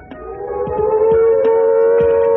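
Air-raid (civil defense) siren winding up: one wailing tone that rises in pitch and loudness over about the first second, then holds steady.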